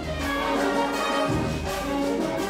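A wind band playing held chords: brass and woodwinds over low bass notes that shift to a new note partway through.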